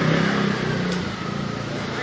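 A motor vehicle engine running steadily, with outdoor background noise.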